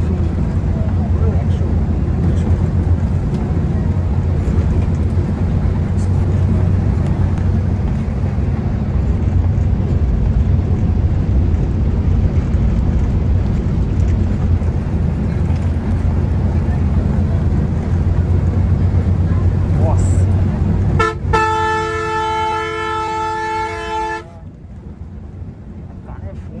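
Steady low drone of a Volvo multi-axle coach at cruising speed, engine and road noise heard inside the cab. About 21 seconds in, a horn sounds one steady blast of about three seconds, after which the drone is quieter.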